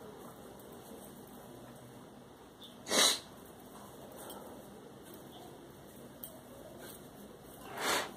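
Two short, sharp breaths close to the microphone, a strong one about three seconds in and a weaker one near the end, over quiet room tone.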